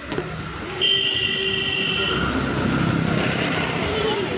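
Loud, steady motor-vehicle traffic noise on a street, with a high steady tone sounding for just over a second from about a second in.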